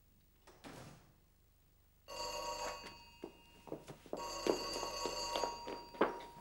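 An old desk telephone's electric bell rings twice: a short ring about two seconds in and a longer one about four seconds in, each fading away after. It is an incoming call.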